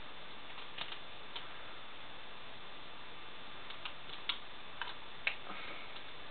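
Faint, scattered clicks of plastic toy parts as a Transformers Thrust figure is transformed by hand: about six small clicks spread over several seconds, over a steady background hiss.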